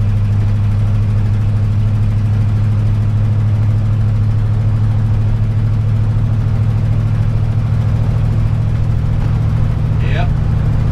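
The engine and road noise of a 1998 Damon Intruder motorhome at a steady cruise, heard inside the cab as an even low drone that does not rise or fall. The engine is running smoothly after a new distributor and fuel sending unit were fitted.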